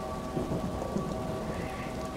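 Steady background hiss with a low rumble and faint steady tones.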